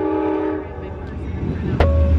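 Amtrak diesel passenger train's horn sounding a steady chord of several notes, cutting off about half a second in, followed by the quieter rumble of the approaching train.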